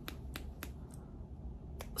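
Four faint, sharp clicks: three close together in the first half and one near the end, over a low steady background hum.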